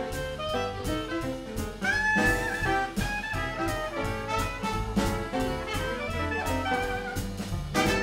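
Trad jazz band playing an instrumental introduction: trumpet and clarinet lead over piano, bass and drums keeping a steady swing beat, with a held high note bending up about two seconds in.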